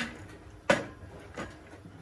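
A plastic sippy cup knocking against the bars of a metal baby gate: three sharp knocks, the second and loudest about two-thirds of a second in.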